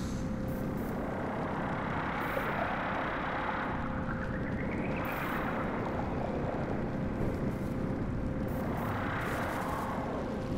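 Rumbling electronic sound-design drone: a dense, even rumble with a faint steady hum, and a whooshing sweep that rises and falls about four seconds in and again near the end.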